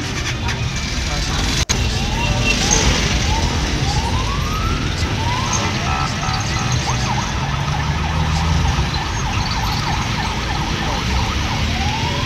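Road traffic with vehicle engines running, over which an electronic siren sounds a string of short rising sweeps and quick chirps, with one longer rising sweep about four seconds in.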